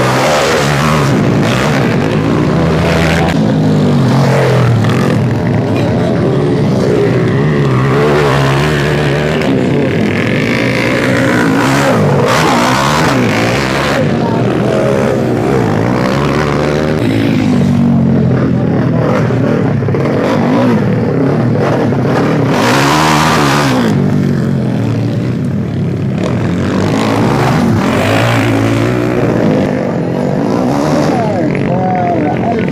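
Dirt bikes racing, their engines revving up and dropping back again and again as they pass.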